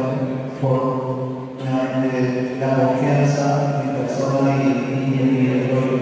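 A man's voice intoning into a microphone in a steady, chant-like cadence, with drawn-out syllables about a second long and short breaks between them.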